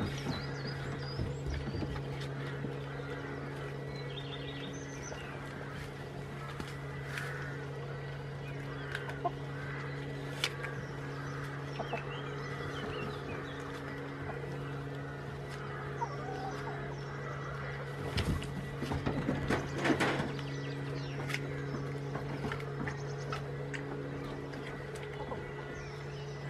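Chickens clucking over a steady low hum, with small high chirps and scattered clicks. A cluster of louder knocks and rustles comes about eighteen to twenty seconds in.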